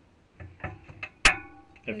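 Glass tumbler of water handled on a freezer's wire shelf: a few light taps, then one sharp clink a little past halfway that rings briefly.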